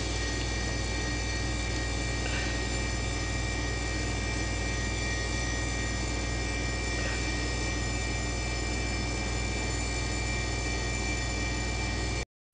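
Steady electrical hum with an even hiss underneath, unchanging throughout, with no distinct events standing out.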